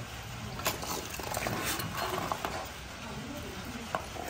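Light metallic clicking and scraping from a hedge-trimmer cutter bar as its reciprocating blades are worked back and forth by hand.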